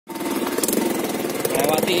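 Small motorcycle engine running steadily with a rapid, even pulsing beat. A man's voice comes in near the end.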